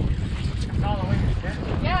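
Wind buffeting the microphone in a low, uneven rumble, with a voice on deck about a second in and again near the end.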